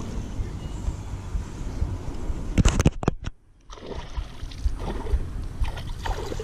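Rustling and handling noise of a baitcasting rod and reel being worked close to the microphone, over a low rumble. A quick run of sharp clicks comes about two and a half seconds in, then the sound cuts out for about half a second.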